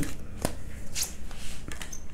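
A tarot deck being handled and a card drawn off it and laid on the table: soft card-on-card rustles, with one sharp click about half a second in.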